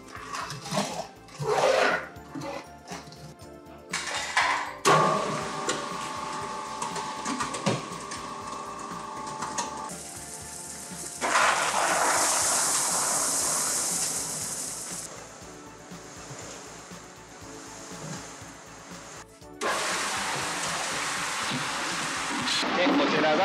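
Background music, with sand and gravel being tipped from plastic crates into a pan-type concrete mixer: a loud rushing pour starts about eleven seconds in and fades after a few seconds.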